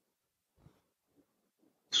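Near silence, with only faint low scattered sounds, until a man's voice starts speaking right at the end.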